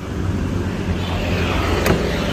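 Low, steady rumble of a motor vehicle running close by, with road noise rising in the second half and one sharp click just before the end.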